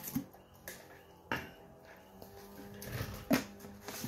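A few sharp clicks and knocks of hand tools and parts being handled, over faint background music.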